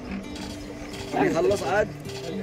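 Wind-up gramophone being cranked, its spring-winding ratchet clicking, with music and voices underneath.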